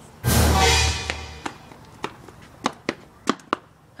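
A dramatic music hit: one sudden deep boom a quarter second in, ringing out for about a second. A handful of sharp, scattered taps follow.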